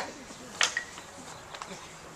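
A sharp tap of a small hard object on the worktable about half a second in, with a brief ring, then a couple of lighter taps a second later: tools and supplies being handled and set down.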